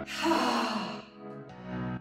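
A woman's breathy exhale, falling in pitch, in the first second, heard with steady background workout music.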